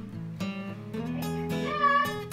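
Background acoustic guitar music with plucked notes. Near the end a short, wavering, high-pitched cry rises over the music.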